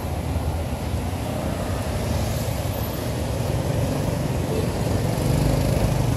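A motorcycle engine idling steadily: a low, even rumble with no revving.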